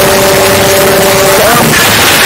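Very loud, harsh noise filling the whole range, with a steady held tone that ends in a short upward slide about one and a half seconds in.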